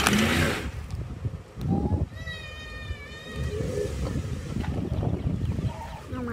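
Pickup truck engine running under load as it pulls on a strap tied around a tree stump, a low steady rumble. A short loud noisy burst comes right at the start, and a high-pitched wavering cry sounds over the engine about two seconds in.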